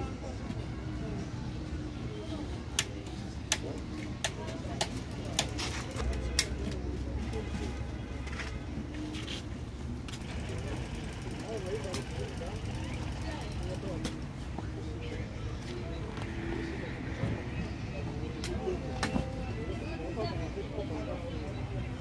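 Indistinct voices talking in the background over a steady low hum, with scattered sharp clicks and taps, most of them in the first few seconds.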